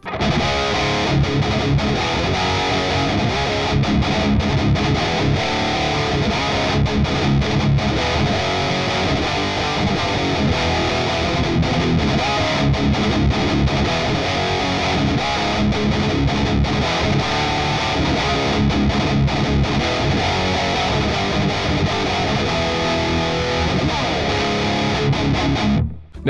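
Ernie Ball Music Man Valentine electric guitar played through a Revv G20 Mini Generator amp head and recorded from the amp's XLR out through a cabinet impulse response, playing a continuous distorted riff.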